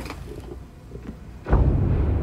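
Music video soundtrack: a quiet, sparse stretch, then about one and a half seconds in a sudden deep bass rumble starts and carries on.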